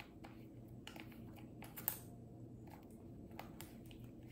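Faint, scattered light clicks and taps from fingers handling the plastic pump top of a liquid soap bottle, with one sharper click a little before halfway.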